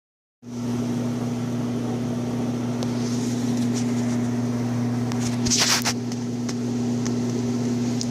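A steady low mechanical hum, with a short burst of rustling about five and a half seconds in.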